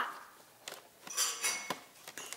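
Small plastic toy spinning top spinning on a doll-sized plastic school desk: a light click, then a brief stretch of clinking rattle about a second in.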